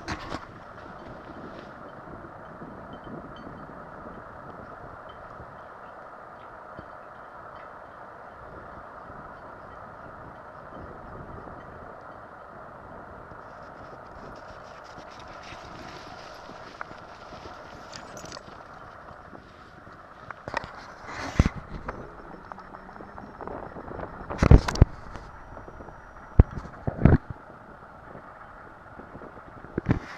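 Footsteps and dog paws crunching in snow over a steady outdoor hiss, with several sharp, loud knocks in the last third.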